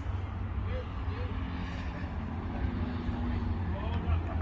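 A car's engine running low and steady, with faint distant voices about a second in.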